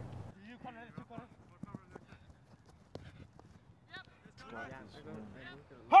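Quiet, scattered talk from a group of teenage soccer players gathering into a huddle, with a few faint clicks. A loud shout starts the team's break chant right at the end.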